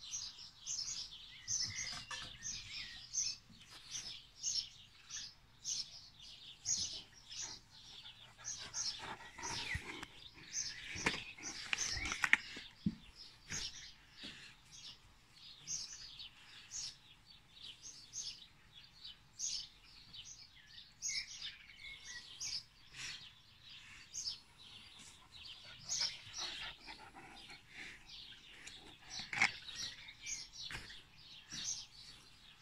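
Small birds chirping over and over, several short high calls a second, with a few dull knocks about ten to thirteen seconds in.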